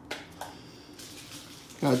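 Freshly pulled trading cards and pack foil being handled: a faint rustle with two small clicks in the first half second.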